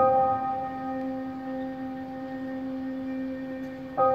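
A keyboard chord struck and held, its several notes ringing on and slowly fading, with the next chord struck near the end; slow, bell-like live music heard in a large arena.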